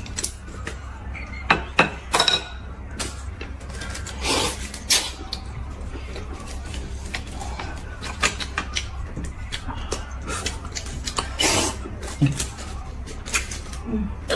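Table eating sounds: scattered short clicks and taps of chopsticks against china bowls, brief slurps of noodles, and the small crinkle of a sweet wrapper being peeled.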